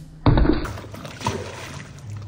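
A small thrown object hitting the paddleboard and dropping into the pool: a sudden thump and splash about a quarter second in, then the water sloshing.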